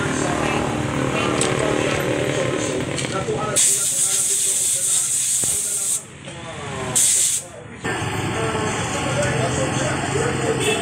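Two bursts of hissing from a pressurised spray nozzle at a stripped motorcycle engine: a long blast of about two seconds, then a short one a second later.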